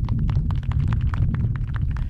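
Low, uneven rumble of wind buffeting an outdoor microphone, with a rapid irregular crackle over it.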